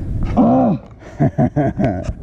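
A man groans in pain from sore thigh muscles while stretching: one long groan whose pitch rises then falls, then a quick string of short grunts about a second in.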